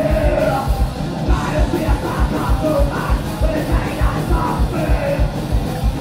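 Live thrash metal band playing, with harsh shouted vocals over distorted electric guitars and a steady kick drum beat of about three hits a second, heard from the crowd.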